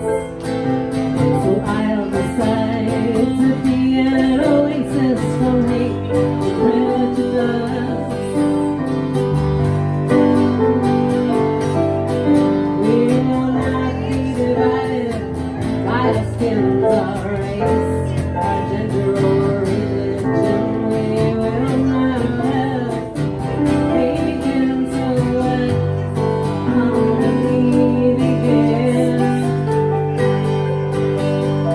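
Live acoustic folk song: a strummed acoustic guitar and a keyboard playing piano, with a woman singing over them at a steady level.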